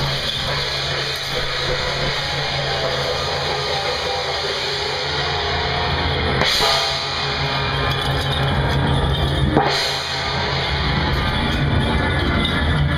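Temple procession percussion beating continuously: hand drums and clashing cymbals, with louder crashes about six and a half and nine and a half seconds in, over a steady low drone.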